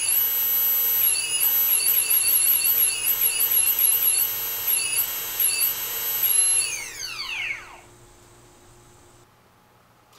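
KDE Direct XF multirotor brushless motor, with no propeller fitted, spinning up on radio throttle. Its high-pitched electric whine rises at the start, holds for about six seconds with small wobbles in speed as the throttle is worked, then winds down and stops about eight seconds in. The motor spinning shows that the isolated ESC has armed and is driving the motor.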